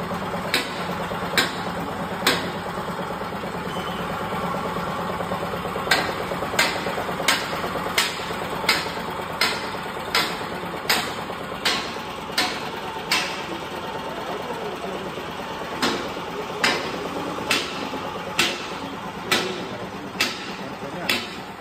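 A grain-cutting machine running with a steady hum, while sharp knocks repeat about every three-quarters of a second in runs: three near the start, a long run from about six to thirteen seconds, and another from about sixteen seconds on.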